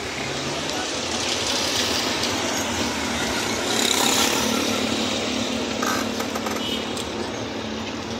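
A car driving along a busy street, heard from inside the cabin: steady road and engine noise that swells about halfway through.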